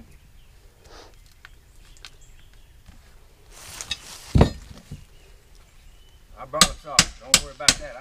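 Hammer blows on a metal bar worked into wooden trim: one heavy knock about halfway through, then from near the end a quick run of sharp, ringing strikes, about three a second.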